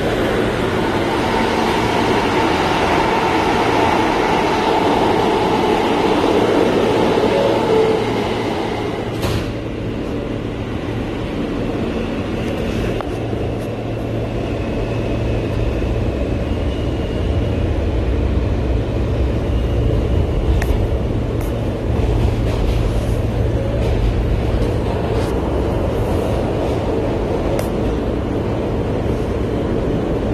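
New York City subway car in motion, heard from inside the car: a steady rumble of the train on the rails, a little louder for the first eight seconds, with a faint high whine about halfway through.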